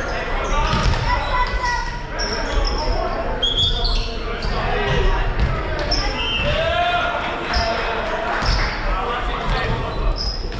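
Sneakers squeaking and a volleyball bouncing on a hardwood gym floor, with people talking around the court, in an echoing gym.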